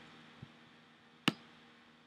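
A single sharp computer-mouse click about a second in, over faint room tone.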